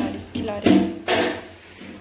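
A person speaking a few words in a small room, with two short breathy noises in the middle.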